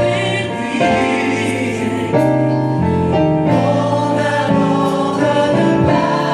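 Gospel choir of mixed voices singing in harmony into microphones, with long held chords that change about every second over a low bass accompaniment.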